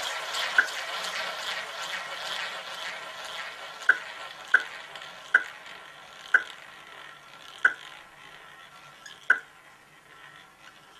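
Roulette ball spun round the wheel's track, a continuous rolling whir that slowly fades as the ball loses speed. Sharp ticks come over it at lengthening gaps as the ball slows.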